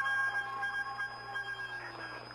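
A held musical note with overtones, from a station music bridge on a shortwave broadcast, fades out near the end under a steady hiss of radio reception noise.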